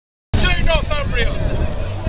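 A person's voice speaking over a loud low rumble of wind on the microphone.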